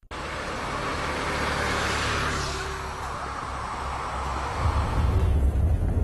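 Bus on the road: a rushing noise that swells and fades over the first few seconds, then a steady low rumble of engine and tyres inside the bus cabin from about four seconds in.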